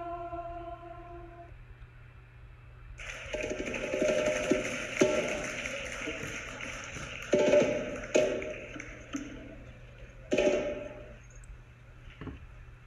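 The end of a choral chant in the slideshow's soundtrack, which stops about a second and a half in. From about three seconds a loud rushing noise follows, broken by three sudden louder bursts near the end.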